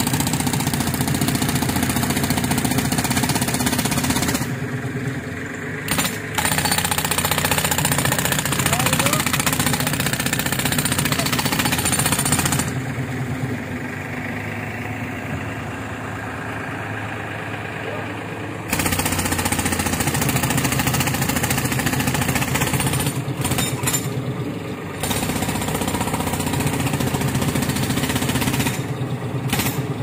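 Pneumatic jackhammer fed by a tractor-driven air compressor, breaking rock in a well shaft. It hammers rapidly in long bursts of several seconds. In the pauses, about four seconds in, from about thirteen to nineteen seconds, and near the end, only the compressor's engine is heard running steadily.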